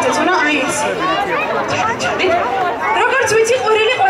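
Crowd of children's voices chattering and calling out all at once, many high voices overlapping into a steady babble.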